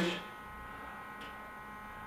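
Steady electric hum with a thin, high buzzing whine from a running Herrmann ozone therapy machine while it holds pressure and concentration in the gas line.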